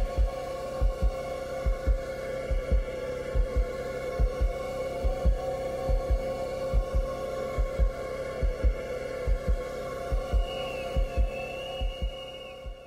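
Eerie background score: a steady low drone with a heartbeat sound effect, a double thump about once a second. A faint high wavering tone joins near the end.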